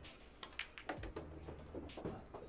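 Pool cue striking the cue ball and billiard balls clacking together: a run of sharp clicks between about half a second and a second in.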